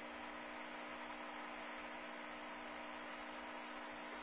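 Steady hum and hiss of running aquarium equipment, with an air stone's bubble stream going.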